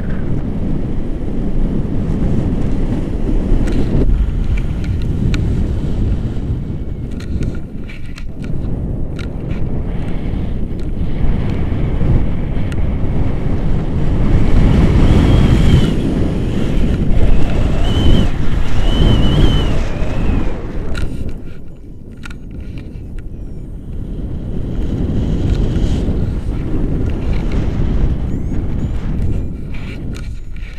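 Wind rushing over an action camera's microphone in flight under a tandem paraglider: a loud, continuous buffeting roar that swells in the middle and eases briefly near the end.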